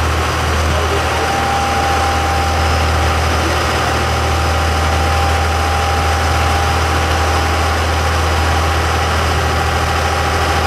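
Sportfishing boat's engine running steadily under way: a deep, even hum with a thin steady whine above it, over the rush of the wake.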